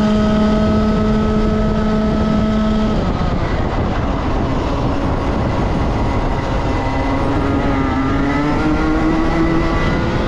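Single-speed racing kart's two-stroke engine held near 12,700 rpm on a straight, dropping off abruptly about three seconds in as the throttle is lifted for a corner, then climbing steadily in pitch from about seven seconds in as it accelerates out of the turn. Steady wind rush on the onboard microphone throughout.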